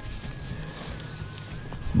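Low rustling and wind rumble as a person walks through tall dry grass, with a faint thin high tone that wavers slightly.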